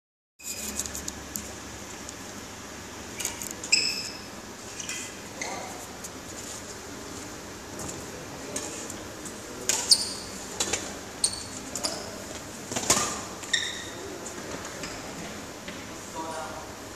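Badminton play in a large hall: scattered sharp knocks of rackets hitting shuttlecocks and short squeaks of shoes on the court floor, over a steady hall hum.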